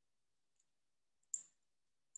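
Near silence with one short, sharp click a little past halfway: glass tapping glass as a glass pin is pushed through the U-shaped glass ear piece.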